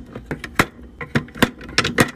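Small makeup pots clicking and clacking against one another and the clear acrylic organizer as they are set down in rows: a quick, irregular run of sharp taps.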